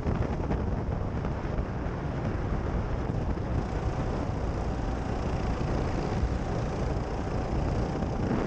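Go-kart driving at speed on an asphalt track, its running noise mixed with wind buffeting the microphone, steady throughout.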